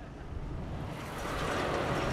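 Heavy truck driving by on a road, its engine rumble and tyre noise growing steadily louder.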